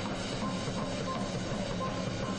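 Muay Thai ringside music: a reedy wind melody with sustained, horn-like notes over a steady background of crowd noise.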